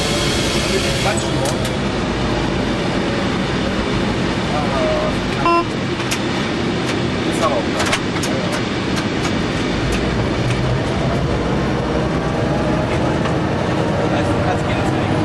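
Inside the cab of a Nohab diesel locomotive, its EMD two-stroke diesel engine running steadily under load. Wheels click over rail joints and points in the second half, and a brief high tone sounds about five and a half seconds in.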